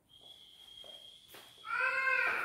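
An animal's call, one drawn-out cry that rises and falls, near the end, over a faint steady high-pitched tone.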